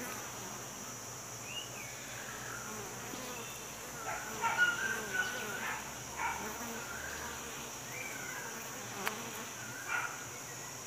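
Honeybee colony clustered in a hollow cavity nest, buzzing steadily. Short gliding chirps sound over the buzz, the loudest bunch of them about four to six seconds in.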